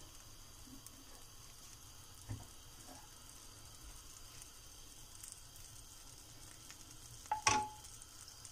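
Butter melting and foaming in a hot nonstick frying pan, sizzling faintly and steadily. A louder knock comes near the end as a wooden spatula goes into the pan.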